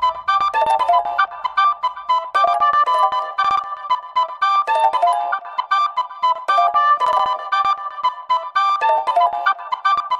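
Background music: a light tune of quick, high notes with no bass, its short phrase repeating about every two seconds.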